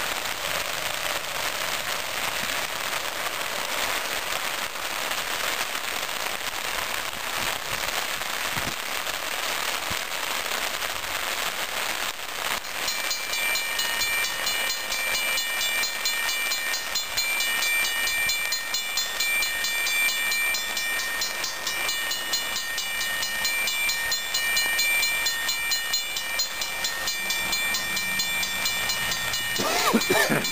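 Steady rain falling on a wet road. About twelve seconds in, a railroad grade-crossing warning bell starts ringing rapidly and keeps on ringing, a sign that the crossing has activated for an approaching train.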